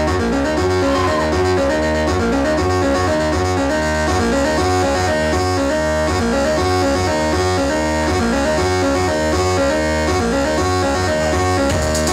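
Live electronic music played on synthesizers and a laptop: a steady deep bass under a busy, quickly changing pattern of pitched synth tones, loud and even throughout.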